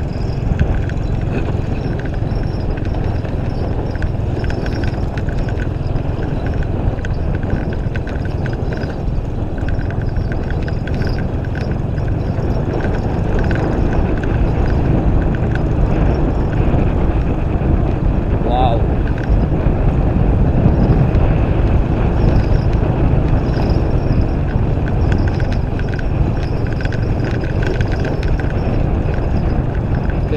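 Motorcycle being ridden along a rough dirt track: a steady, loud rumble of engine and road noise mixed with wind on the microphone.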